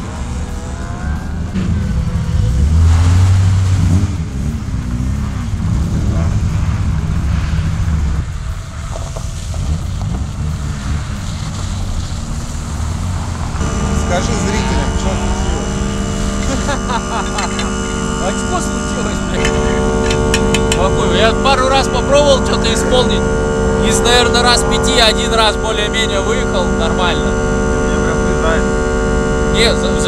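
A car engine running and revving for the first half, then from about halfway a steady electrical hum sets in, with muffled voices over it.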